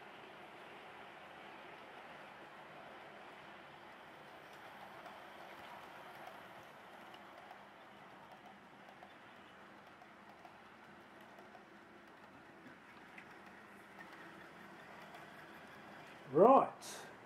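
Faint, steady running of a Hornby Class 60 OO gauge model locomotive's can motor and wheels on the rails as it hauls a train of container wagons, a little louder in the middle as the wagons pass close by.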